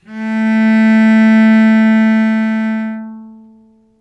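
Cello bowing a single sustained A, the A below middle C, held at one steady pitch and then dying away over the last second and a half.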